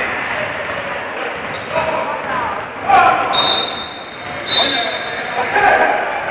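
A referee's whistle blown twice, each steady blast about a second long, over players' voices and a basketball bouncing on the gym floor.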